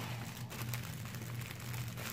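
Cellophane basket wrap crinkling faintly as it is handled and untied, over a steady low hum.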